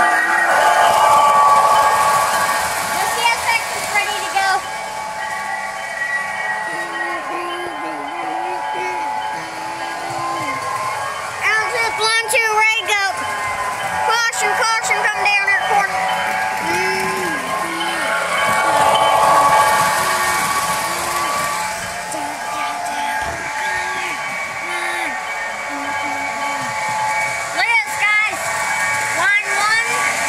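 Model diesel locomotive running on three-rail track: a steady electric-motor whine and wheel rumble that swells as it passes close, about two seconds in and again near twenty seconds.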